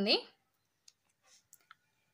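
A woman's voice trails off at the start, then a few faint, short clicks from a hand handling the glossy pages of a printed catalogue.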